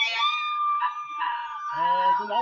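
A dog howling: one long, high held note that breaks off near the end as a man's voice comes back in.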